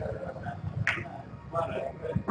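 Snooker balls colliding on the table as they roll after a shot, one sharp click about a second in, with low voices murmuring in the room.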